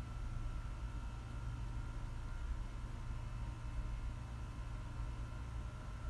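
Steady low background hum with a faint, even high-pitched whine above it and no distinct events: room tone.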